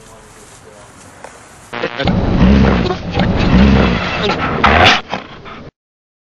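A quiet steady background, then after a sudden cut a man's voice, loud and wordless, in several rough surges for about three and a half seconds, cut off abruptly.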